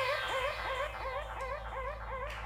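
A swooping electronic tone repeating about four times a second, fading slowly, over a steady low bass hum.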